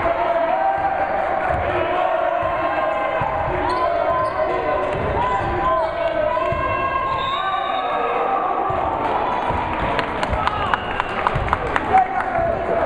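Basketball being dribbled on a hardwood gym floor, with sneakers squeaking as players run and cut, and voices calling out in the hall. Near the end comes a quick run of sharp knocks.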